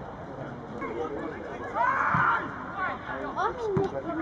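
Voices on and around a football pitch calling out and talking, indistinct, loudest about two seconds in and again in short bursts near the end.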